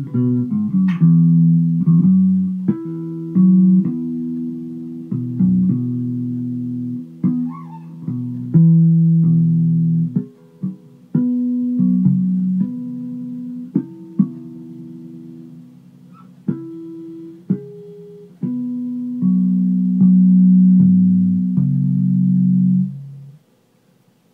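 Fretless electric bass, a Squier Affinity Jazz Bass with its frets removed, played solo: a run of plucked notes, often two ringing together, each struck and left to decay. The last held note is cut off shortly before the end.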